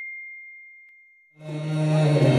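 A single bell-like notification ding rings on as a high pure tone and fades away. About a second and a half in, devotional bhajan music starts suddenly and louder.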